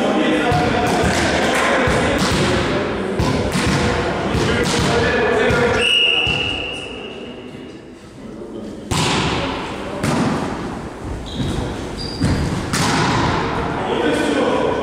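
Volleyball play in a large gym: thuds of the ball being struck and bouncing on the wooden floor, shoes on the floor and players' voices. The thuds stop for a few seconds about six seconds in, when a short high whistle sounds, then resume.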